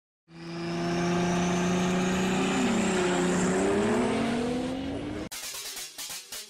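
Race-car engine sound effect: it fades in and runs at a steady high pitch, with some tones bending up and down midway, then cuts off suddenly a little after five seconds in. A fast stutter of short pulses follows.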